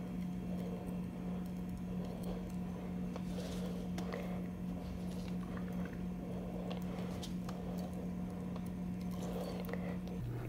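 Faint squishing and light clicking of greasy gloved fingers packing steel needle bearings into grease inside a Muncie 4-speed countergear bore, over a steady low hum.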